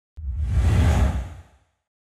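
Whoosh transition sound effect with a deep rumble under it, accompanying a TV news logo animation. It starts with a brief click, swells, and fades away after about a second and a half.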